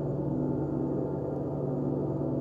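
Large gongs ringing together in a steady, sustained wash of many overlapping low tones, with no single strike standing out.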